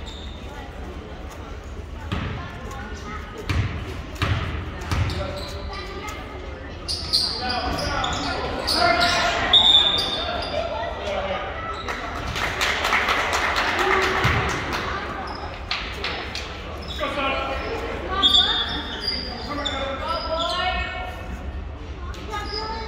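A basketball bouncing a few times on a hardwood gym floor, then spectators and players shouting and cheering, the voices echoing around the large gym.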